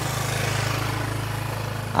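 A motorbike engine idling steadily with an even low hum.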